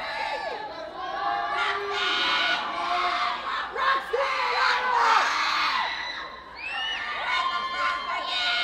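A large audience cheering and screaming, with many high shrieks and whoops over the crowd's noise, loudest in the middle.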